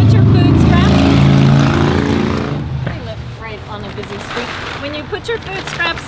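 A loud, low, steady motor hum that fades out about three seconds in.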